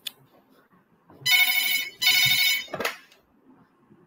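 A telephone ringtone sounding twice, two buzzy electronic rings of under a second each, with a short sharp click right after the second.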